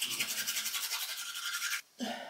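Teeth being brushed with a toothbrush: a steady scrubbing that stops abruptly near the end.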